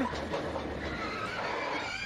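A NASCAR Cup car's tyres squealing and skidding as it spins, over a steady haze of track noise. A thin squeal comes in during the second half, rising slightly in pitch, while a low engine hum fades out about halfway through.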